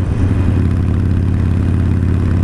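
Harley-Davidson Forty-Eight's 1200 cc air-cooled V-twin engine running steadily at cruising speed, with wind and road noise.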